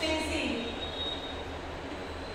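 Chalk writing on a chalkboard, with a thin high squeak in the first second.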